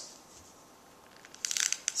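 Low room tone, then about half a second of rapid light crackling clicks near the end from paper craft strips being handled.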